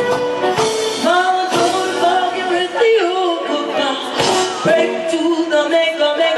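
Live acoustic folk band playing a lively song, fiddle and plucked strings under a sung melody line.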